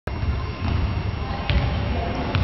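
A basketball being dribbled on a hardwood gym floor, thudding over a steady low rumble of the hall.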